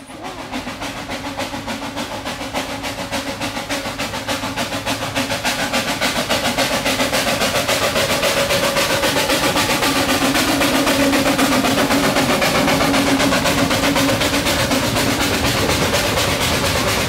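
A miniature railway train approaching and passing, heard as a fast, even clatter that grows steadily louder as it nears.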